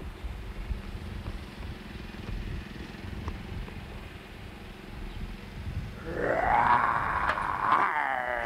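Low rumble of wind on the microphone, then about six seconds in a small child's loud, high-pitched squealing voice, held for a couple of seconds and wavering in pitch.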